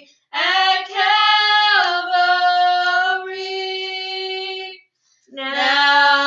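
Two women singing a hymn together without instrumental accompaniment. A phrase starts just after the opening, ends on a long held note, and breaks off for a short breath before five seconds. The next line then begins.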